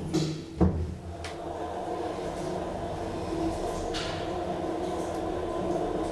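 DEVE hydraulic elevator: a clunk about half a second in as the car sets off, then the hydraulic drive's steady hum as the car travels.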